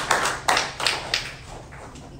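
A small audience clapping, thinning to a few last separate claps that die away about a second and a half in.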